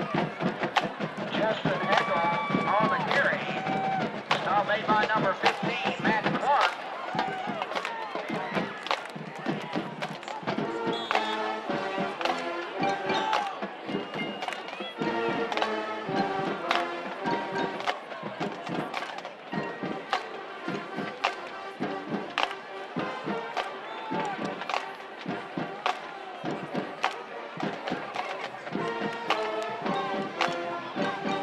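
High-school band playing in the stands, with drum hits throughout and horns holding chords from about ten seconds in, mixed with crowd voices.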